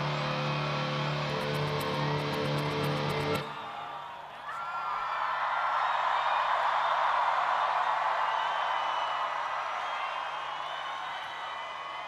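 Live rock band with held guitar notes and rapid high ticks, cutting off abruptly about three and a half seconds in. A large crowd then cheers and screams, swelling and slowly fading.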